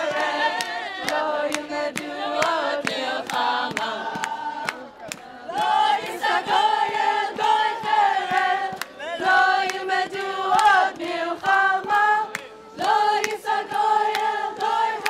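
A group of voices singing a Hebrew song together, with steady hand-clapping keeping the beat at about three claps a second; the singing breaks briefly between phrases about five seconds in and again near the end.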